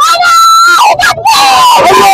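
A young girl shouting a slogan into a handheld microphone in a high, shrill voice: two long drawn-out shouts with a short break about a second in, very loud and close to the mic.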